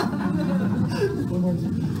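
Indistinct talking from several people, softer than a voice close to the microphone, with no clear words.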